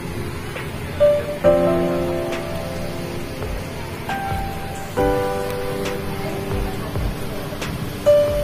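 Background music of held chords, with new chords struck about a second in, again half a second later, and again about five seconds in, over a steady hiss.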